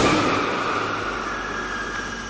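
A mobile deformable barrier slamming into the side of a 2020 Toyota Yaris in a 60 km/h side-impact crash test: a loud crash at the very start, then scraping, crunching noise with a faint high squeal that fades away over about two seconds.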